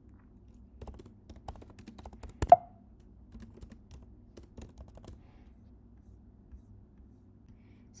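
Typing on a computer keyboard: a run of key clicks with one much louder keystroke about two and a half seconds in. The typing stops about five seconds in.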